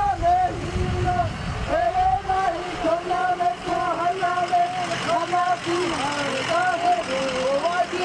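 A single voice chanting in long phrases on a nearly steady pitch, the notes bending at the ends of phrases, in the manner of a Hawaiian oli. A brief low rumble comes about a second in.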